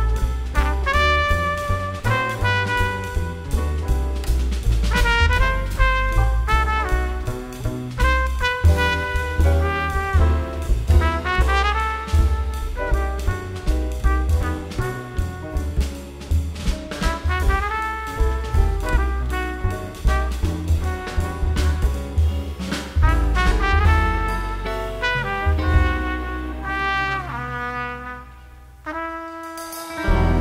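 A jazz quintet playing, with a trumpet carrying the melodic line over a walking upright bass, guitar and drum kit. The band thins out and drops in level near the end.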